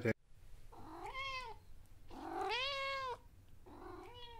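A domestic cat meowing three times, each meow rising and then falling in pitch. The middle meow is the longest, and the last one starts near the end.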